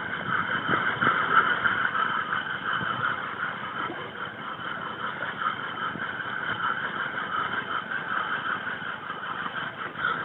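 Fishing reel's drag buzzing steadily as a hooked king mackerel runs line off the reel, a little louder in the first few seconds.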